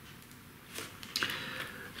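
Faint handling sounds of a 4K Blu-ray steelbook case turned in the hands: a few light clicks about a second in, then soft scraping and rustling.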